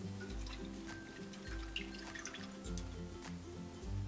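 Background music with a bass line that repeats about once a second, over the faint trickle of coconut milk being poured from a measuring cup into a stainless steel saucepan.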